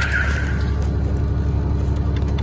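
Truck engine running steadily, a constant low rumble, with a brief hiss near the start.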